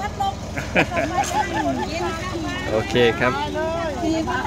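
People talking, with a man saying "okay" near the end, over a steady low rumble.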